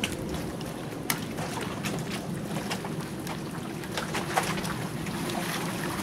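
Fillet knife cutting and scraping along a fish on a wooden cleaning board, with scattered short sharp clicks of the blade on the board, over a steady low hum.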